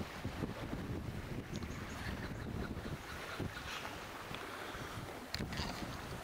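Wind buffeting the camera's on-board microphone: an uneven low rumble with a fainter hiss, easing slightly in the second half.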